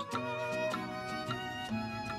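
Instrumental background music, a violin carrying the melody over a steady pulse of note attacks.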